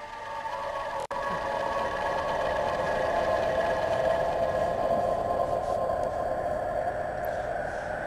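Film background score: a sustained drone of several steady held tones, with a brief dropout about a second in, growing a little louder over the first couple of seconds.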